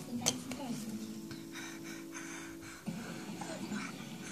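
Television running in the background with speech and music, including a held chord for about two seconds in the middle. A sharp click sounds about a quarter second in.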